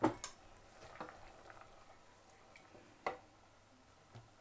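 Wooden spoon stirring potato chunks into simmering curry in a stainless steel pot. A few sharp knocks against the pot stand out, two at the very start and a stronger one about three seconds in, with quiet stirring between.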